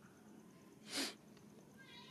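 A monkey's single short, breathy sneeze or snort about halfway through. Faint high-pitched calls start near the end.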